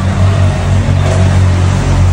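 A loud, steady, low mechanical drone from a running motor, unchanging throughout.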